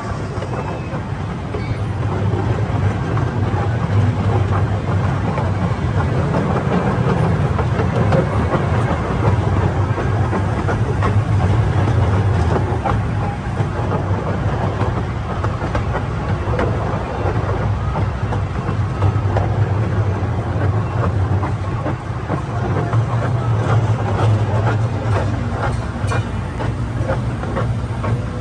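Casey Jr. Circus Train's small cars rolling along narrow-gauge track: a steady low rumble with a constant run of wheel clicks and rattles over the rails.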